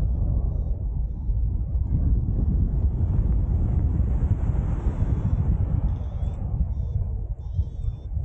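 Airflow buffeting the microphone of a harness-mounted camera on a paraglider in flight, a steady low rumble. A few faint high wavering chirps sound near the end.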